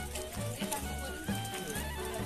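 Background music with a steady low beat, about two pulses a second, and a melody over it.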